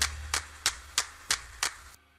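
The closing bars of a K-pop track: a short, sharp percussion hit about three times a second, clap-like, over a low bass note that fades out. The hits end just before two seconds in.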